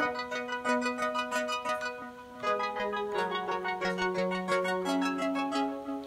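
Omnisphere synthesizer arpeggiator patch: rapid repeating notes running over held chords, the chord changing about two and a half seconds in and again near five seconds.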